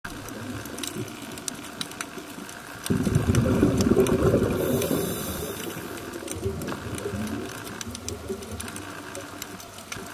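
Underwater sound picked up by a camera in its housing: a steady hiss with scattered sharp clicks, the crackle of snapping shrimp on the reef. About three seconds in, a loud burst of bubbling rumble starts suddenly and fades over the next few seconds: the diver's exhaled breath leaving the scuba regulator.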